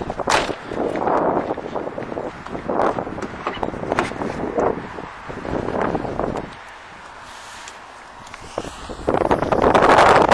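Wind buffeting the microphone of a hand-held camera, in uneven gusts with a few handling knocks and rustles. It eases off for a few seconds, then a louder gust comes near the end.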